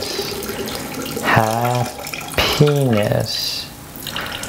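Water running steadily from a bathroom tap into a sink.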